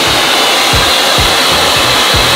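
Handheld hair dryer blowing steadily on a client's freshly braided hair.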